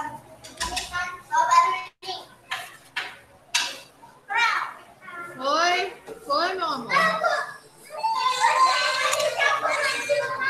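Children's voices talking and shouting over one another, with high squeals that swoop up and down in pitch, building into dense overlapping chatter near the end.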